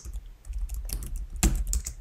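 Computer keyboard typing: a quick, irregular run of keystrokes as a word is typed, one keystroke louder than the rest about one and a half seconds in.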